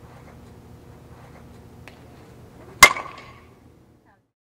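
A softball bat striking a tossed softball once, about three seconds in: a single sharp crack with a short ring.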